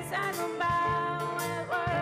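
Live rock band playing a song with drums, guitars, bass and keyboards, a woman singing the lead vocal with wavering held notes over a steady drum beat.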